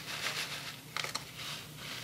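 Small pieces of dry, crispy ramen noodle snack pouring out of its plastic snack bag onto a palm: faint rustling of the bag with a few small, crisp ticks as the pieces land.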